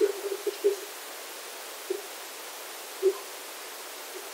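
Steady microphone hiss on the stream audio, with short voice-like bursts in the first second and two brief blips later. The hiss is the mic's noise floor before any noise suppression is applied.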